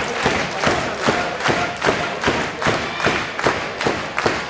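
Arena crowd clapping in a steady rhythm, about two and a half claps a second, with scattered shouts.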